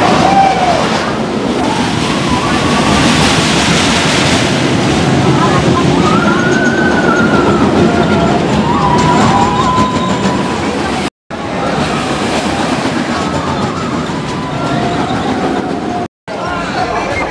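Steel roller coaster train running along its track with a steady rumbling roar, with voices and cries over it. The sound drops out for an instant about eleven seconds in.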